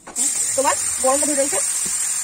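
Liquid poured into hot oil in a wok, bursting into a loud, steady sizzle that starts suddenly just after the start.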